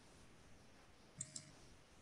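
Near silence on a video call, broken by two sharp clicks in quick succession a little over a second in.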